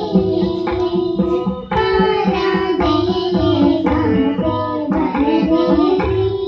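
Carnatic music: young girls singing together, accompanied by a mridangam playing a steady stroke rhythm and a string instrument carrying the melody.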